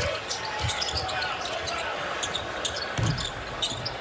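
Basketball dribbled on a hardwood court, with a few low bounces and scattered sneaker squeaks, over steady arena crowd noise.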